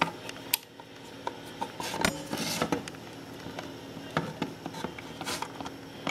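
Handling noise of a small plastic AM radio: scattered clicks, taps and rubbing as it is turned in the hand and its knobs are touched, the sharpest click about two seconds in.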